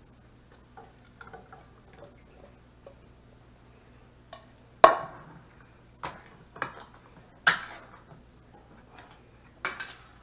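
Soft plops and scrapes as canned chili is tipped out of a tin can into a frying pan, then a few sharp metal knocks from tin cans and a spoon being handled, the loudest about five seconds in.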